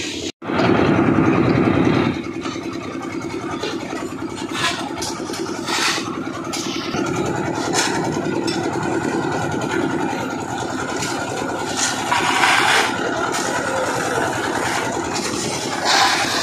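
Concrete mixer machine running steadily, its motor holding a constant hum, with a few short scraping noises on top. It is louder for the first second or two.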